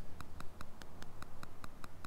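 Quiet, even ticking, about seven ticks a second, over a low hum.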